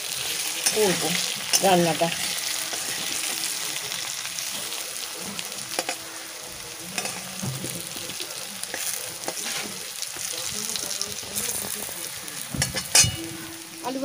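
Potato chunks sizzling as they fry in oil in an aluminium kadai, stirred and scraped with a metal spatula. Two sharper spatula scrapes against the pan come near the end.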